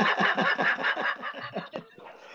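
People laughing over a video call, a run of short repeated laughs that fade out just before the end.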